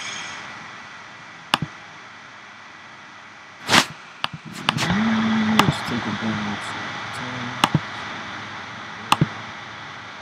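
Computer mouse clicks, single and in quick pairs, from selecting stroke weights in drop-down menus, with one louder knock a little under four seconds in. A short hummed 'mm' from a voice about five seconds in.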